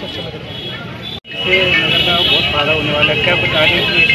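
People talking, with an abrupt cut in the audio about a second in, after which a man's voice is louder. A few steady high-pitched tones run underneath the voices.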